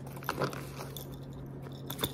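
Tarot cards being handled and shuffled by hand: soft, scattered crackling and snapping of card stock, over a faint steady low hum.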